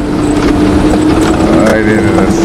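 Engine and road noise inside a military convoy vehicle on the move, with a steady whine and scattered rattles. A voice breaks in briefly near the end.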